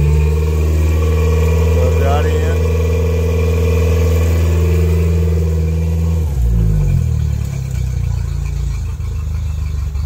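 Mercury outboard motor running in forward gear at a raised, steady speed. About six seconds in it is throttled back, and its pitch falls to a lower idle.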